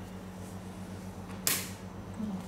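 A single sharp snap about one and a half seconds in as the front grille of a JBL E60 floor-standing speaker is pulled off its mounting pegs, over a steady low hum.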